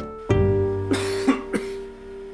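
A man coughs two or three times in a short fit about a second in, sick with a cold. Soft plucked-string background music plays, with one note held beneath the coughs.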